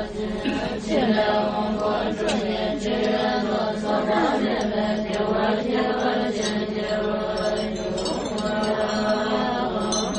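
A group of voices chanting Tibetan Buddhist prayers together, holding one steady low pitch.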